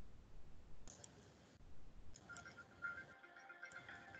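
A few faint computer mouse clicks, then quiet instrumental music from the shared warm-up video starts about two seconds in, faint as its playback volume is being set.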